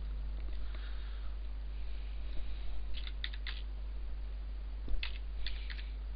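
Computer keyboard keys tapped in two short runs of clicks, about three seconds in and again near the end, as a number is typed in. A steady low hum runs underneath.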